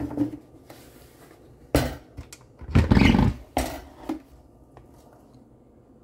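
Parts of an electric pressure cooker and air fryer being handled on a countertop: a few knocks and clunks, and in the middle a loud, rough scraping or rumbling about a second long as the heavy pieces are moved.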